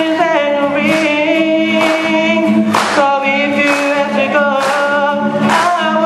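A solo singer, amplified through a handheld microphone, holding long wavering notes over a musical accompaniment with a steady beat about once a second.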